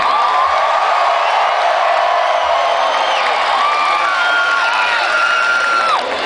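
Large rock-festival crowd cheering and screaming at the end of a live metal song, with many high whoops and shouts rising and falling over a dense roar.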